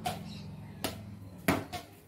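Badminton rackets striking a nylon shuttlecock in a rally: a few sharp hits, the loudest about one and a half seconds in.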